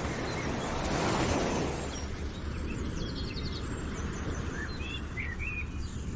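Outdoor street ambience: a steady low traffic hum that swells briefly about a second in, with small birds chirping in short calls through the second half.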